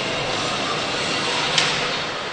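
Ice hockey rink ambience: a steady murmur from the arena, with one short high sound about one and a half seconds in.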